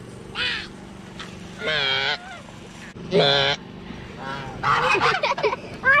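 Domestic geese honking: separate calls about half a second, two seconds and three seconds in, then a quicker run of calls near the end.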